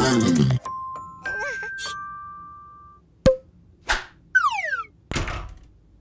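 Cartoon sound effects: a short vocal sound, then steady electronic beeping tones, a sharp click about three seconds in, and a falling whistle glide followed by a brief whoosh near the end.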